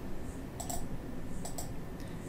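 Two pairs of quick, light clicks from a computer mouse button, a little under a second apart, over faint room tone.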